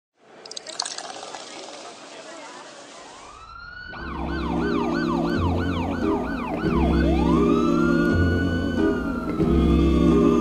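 Police siren sound effect: a rising wail, then a fast yelp of about four sweeps a second, then a slow wail rising and falling. It plays over music with a steady bass line that starts about four seconds in. Before the siren there is a hiss of noise with a few clicks.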